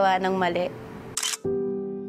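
A woman's speech trails off, then about a second in a short camera-shutter click sound effect, followed by a sustained musical chord that slowly fades under the background music.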